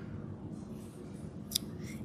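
Small plastic pony beads clicking and a cord rubbing as its end is threaded through the beads, quiet except for one sharp click about three quarters of the way through.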